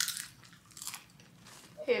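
Popcorn being bitten and chewed: a crunch right at the start and another shortly before one second in, with quieter chewing between.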